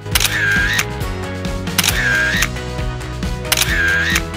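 Background music with three camera-shutter sound effects laid over it, roughly every second and a half to two seconds. Each is a click followed by a short tone.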